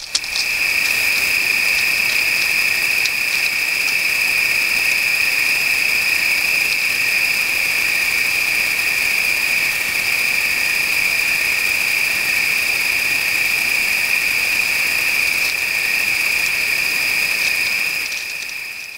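Crickets trilling in an unbroken, steady high-pitched chorus.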